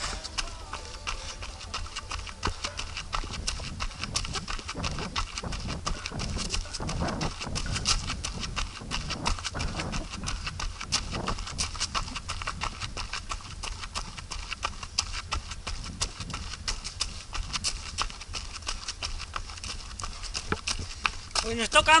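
A trail runner's footsteps on a dirt path strewn with dry leaves, a steady rhythm of foot strikes.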